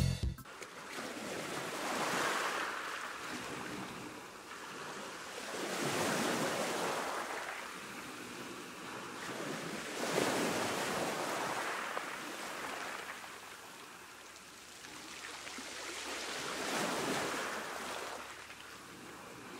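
Small surf washing onto a sandy beach, the noise rising and falling in slow surges about every four seconds as each wave breaks and runs up the shore.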